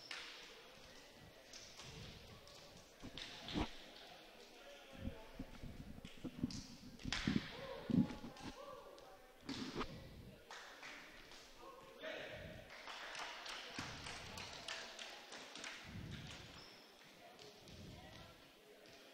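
Faint chatter of players and spectators echoing in a large gymnasium, broken by a few scattered thuds, the loudest about eight seconds in.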